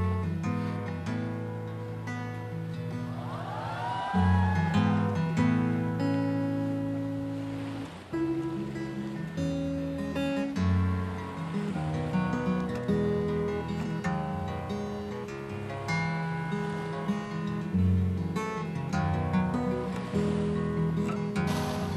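Acoustic guitar playing a slow instrumental tune of held chords and single melody notes, with no singing. A short swooping tone rises and falls about three seconds in.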